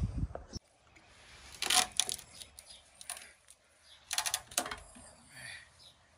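Metal clinking and clicking in two short clusters about two and a half seconds apart, as metal tools and parts are handled on a steel surface.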